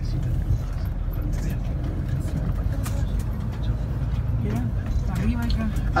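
Steady low rumble of a bus's engine and tyres heard from inside the moving bus, with a few light rattles. Faint voices murmur near the end.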